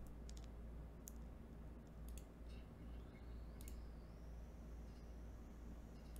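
A few faint, scattered computer mouse clicks over quiet room tone.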